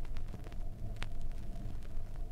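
Surface noise of a 33⅓ rpm 7-inch vinyl record in an unvoiced gap: a steady low rumble with a faint hum and scattered clicks, the sharpest about a second in.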